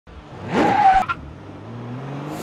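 Car sound effect for an intro logo: a short tyre screech with an engine rev, about half a second long, cut off sharply with a click about a second in, then a low hum.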